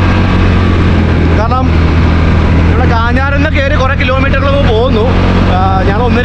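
Steady low drone of a two-wheeler riding along, its engine and riding noise heavy on the microphone, with a man talking over it from about three seconds in.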